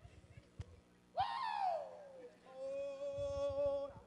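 A man's wordless voice acting out a smoker: a loud falling cry about a second in, then a steady hummed note held for over a second near the end.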